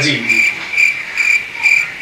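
Cricket chirping in a steady, even rhythm of about two chirps a second, each chirp a clear high-pitched trill.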